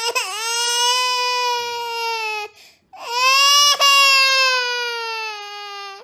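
A baby crying in two long wails. The first lasts about two and a half seconds; after a short breath the second lasts about three seconds. Each wail slowly falls in pitch toward its end.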